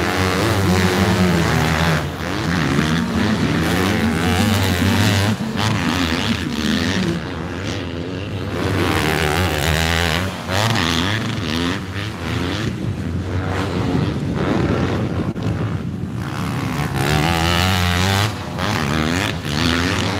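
Motocross bike engines revving up and down as riders work the throttle and shift gears around the track. One bike is loudest at the start, and another grows loud again near the end.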